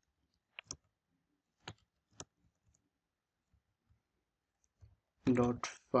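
Scattered computer keyboard keystrokes as code is typed: a handful of sharp clicks, the loudest in the first couple of seconds and fainter ones after. Near the end, a man's voice says a word.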